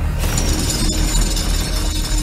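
Horror trailer sound design: a heavy low drone, joined just after the start by a sudden glassy, shimmering high layer, with a sharp click about a second in.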